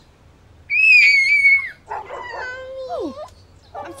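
A young girl's loud, high-pitched scream lasting about a second, followed by shaky, wavering crying that slides down in pitch: she is terrified.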